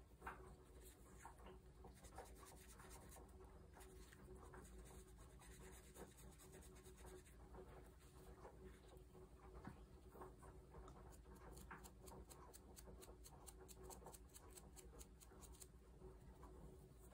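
Faint scratching of a small Lavinia brush, dabbed on an ink pad and brushed along the edges of paper cutouts to ink them. The strokes come thick and fast in the last few seconds.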